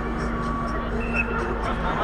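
Steady mechanical hum filling a large inflated sports dome, typical of the blower fans that keep such a dome up, with distant players' voices over it and a brief higher tone about a second in.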